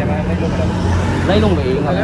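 A vehicle engine idling, a steady low hum.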